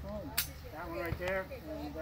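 Men's voices talking, with one sharp crack about half a second in.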